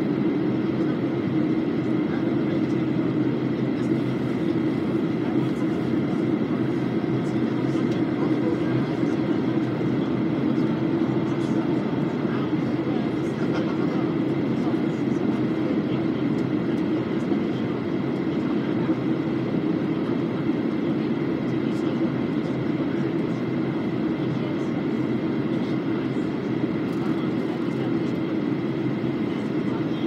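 Steady jet airliner cabin noise heard from a window seat during descent: an even low rush of engine and airflow with a faint steady high tone over it.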